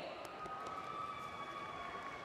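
A faint, steady high-pitched tone with a couple of overtones above it, held for about two and a half seconds, over the low background noise of a large hall.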